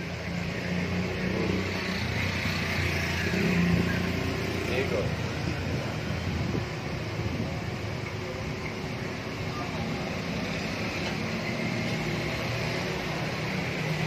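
Steady street noise: road traffic running, with indistinct voices in the background.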